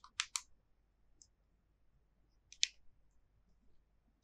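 Faint, short computer-mouse clicks: a few close together at the start, a single faint one about a second in, and a small cluster at about two and a half seconds.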